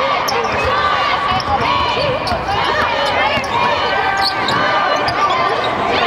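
Live basketball game sound in an arena: a basketball bouncing on the hardwood court, sneakers squeaking in short bursts, and players and spectators calling out.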